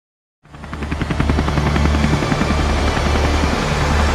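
Helicopter rotor chop fading in about half a second in and then holding steady and loud, over a deep hum.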